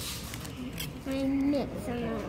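A person's voice: a short drawn-out vocal sound about a second in, with a brief rustle or breath at the start.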